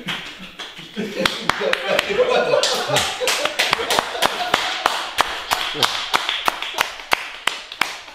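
A small group clapping hands, the claps coming unevenly at roughly four a second from about a second in until near the end, mixed with voices.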